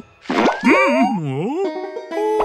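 Cartoon sound effect: a short pop followed by a wobbling, springy boing that swoops up and down in pitch for about a second, then a few held musical notes.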